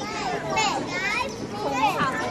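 Several children's voices chattering and calling out at once, lively and high-pitched.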